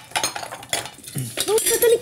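Dishes and cutlery clinking and clattering as they are washed, a quick run of sharp clinks, with a voice coming in about a second and a half in.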